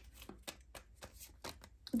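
Tarot cards being handled: a faint, irregular run of clicks and flicks as cards are drawn from the deck and one is laid on the wooden table.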